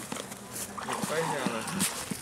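Voices of several people talking and calling out, with water splashing as a man wades out of shallow, icy water.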